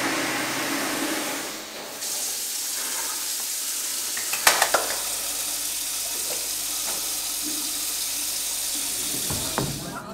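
Tap water running into a washbasin while hands are washed: a steady hiss, with a few sharp clicks about four and a half seconds in.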